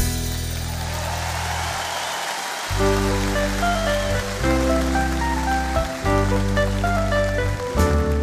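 Live band playing an instrumental passage between sung lines: a rushing hiss over bass notes for the first two or three seconds, then held chords over a steady bass, changing about every second and a half.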